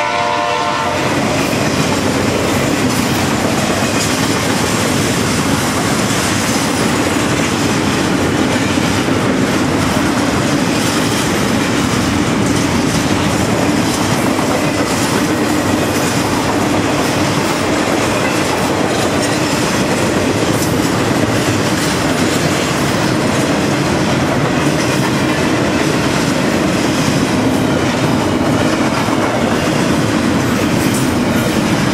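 Double-stack container freight train passing at speed: a steady rumble with the clatter of wheels over the rail joints. The locomotive horn's last note cuts off about a second in.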